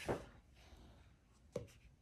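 Faint rustling and handling of a paper notebook being picked up, with two brief soft sounds about a second and a half apart.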